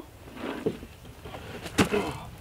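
Heavy wooden post-frame column being swung upright by hand, with a brief scraping rustle of the wood and then one sharp wooden knock near the end as it comes up against the framing.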